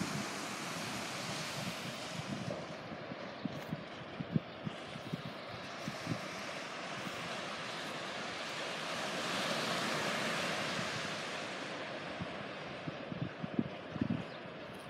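Surf washing on a sandy beach with wind buffeting the microphone: a steady rush that swells louder about nine seconds in, with scattered low wind thumps.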